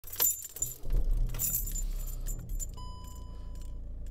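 Car keys jangling in the driver's hand, with a low diesel engine hum coming up about a second in. Near the end a single steady electronic beep from the dashboard sounds for about a second.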